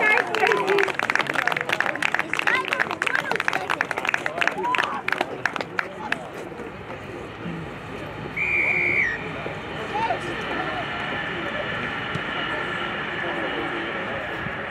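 A few spectators clapping for about six seconds, then one short, steady blast of a referee's whistle a couple of seconds later.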